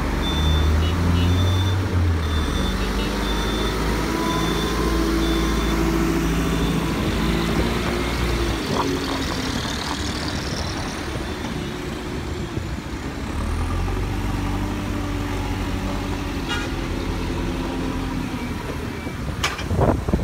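Diesel engine of a JCB 3CX backhoe loader running under load as it works, its pitch rising and falling, with a dump truck's engine running alongside. A high intermittent beeping sounds in the first few seconds.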